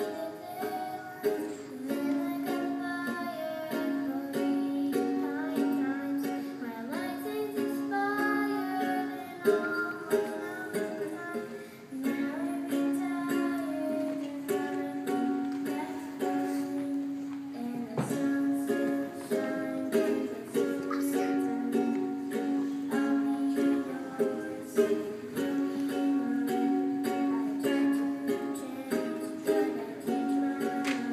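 Ukulele strummed in steady chords, with a young girl singing a pop song over it.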